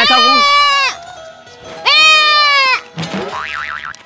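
A young goat bleating twice, each call about a second long and steady in pitch, dropping off at the end, over background music.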